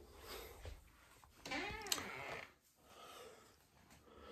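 A single faint, drawn-out whining cry, about a second long, that rises and then falls in pitch.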